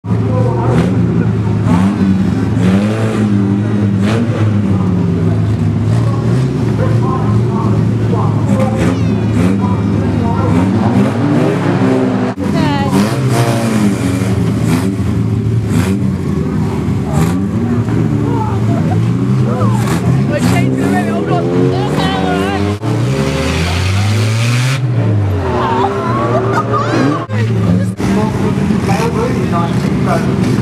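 Several banger-racing cars' engines running and revving, the pitch rising and falling as drivers blip the throttle. The sound breaks off abruptly a few times, and one loud rev swells and falls away with a hiss of tyres near the end.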